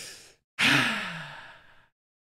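A man sighs into a close microphone: a short breath in, then a longer voiced breath out that falls in pitch and fades.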